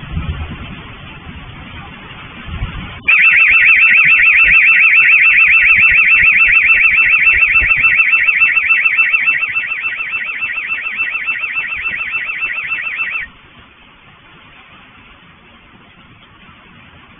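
A scooter's anti-theft alarm sounding: a loud, fast high-pitched warble that starts suddenly about three seconds in and cuts off about ten seconds later.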